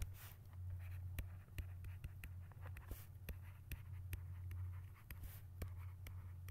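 A stylus tapping and scratching on a pen tablet during handwriting, a quick irregular string of short clicks, over a steady low hum.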